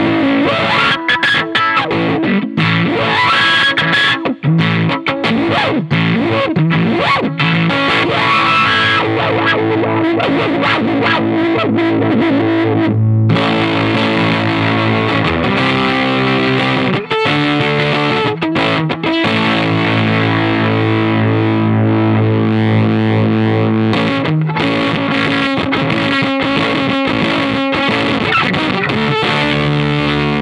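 Electric guitar played through a JHS Pollinator Fuzz V2 fuzz pedal, with a thick, distorted fuzz tone. The first part is a busy run of quick picked notes. About halfway through it changes to long, ringing held chords, which change again a few seconds before the end.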